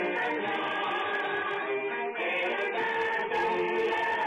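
Background music of several voices singing together in held notes, like a choir.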